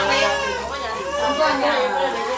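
Children's voices: kids talking and calling out while they play.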